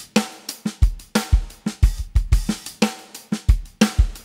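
Sampled acoustic drum kit in Native Instruments Studio Drummer playing a sixteenth-note hi-hat groove over kick and snare, in a steady, even rhythm.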